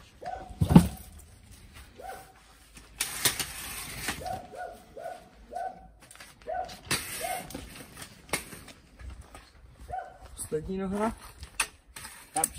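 A dog barking repeatedly in short barks, with a run of about five quick barks in the middle. A loud thump comes about a second in, and a brief rustle a few seconds in.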